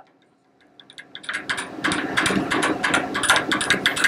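Near silence for most of the first second, then a fast, uneven train of mechanical clicking and ratcheting that builds and keeps going: the optical comparator's work stage being moved to bring another part of the workpiece under the lens.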